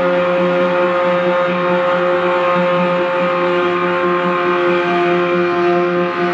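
Live free-improvised jazz ensemble: horns and other instruments sustain long held notes that layer into a dense, steady drone. A new higher note enters about five seconds in.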